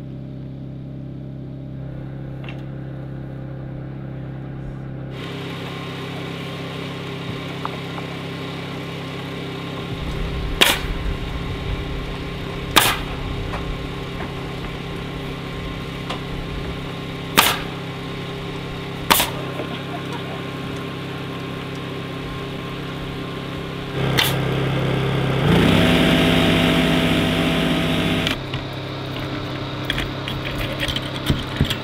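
A pneumatic coil siding nailer fires single shots a few seconds apart, five in all, over a steady mechanical hum. Near the end a motor spins up and runs for about three seconds.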